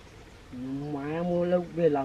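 A man's voice drawing out one long, steady vocal syllable, followed by a shorter second syllable near the end.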